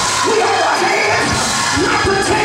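Church praise break: loud, steady gospel music with a man shouting into a microphone over it, and a congregation cheering and shouting along.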